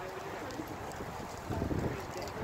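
Wind buffeting the microphone: a low rumble that swells near the end.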